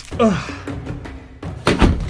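Battle sound effects over background music: a man's short cry falling in pitch just after the start, then a loud heavy thud about 1.7 seconds in as the speared warrior is struck down.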